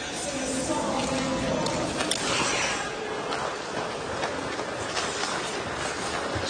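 Ice hockey arena sound during play: a steady crowd murmur with a few sharp clicks of sticks on the puck in the first few seconds.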